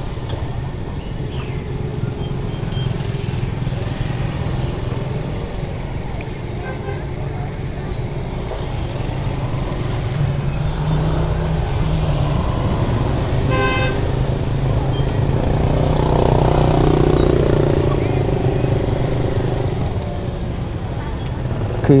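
Motor scooter engine running steadily at low speed, with a short vehicle horn toot about fourteen seconds in.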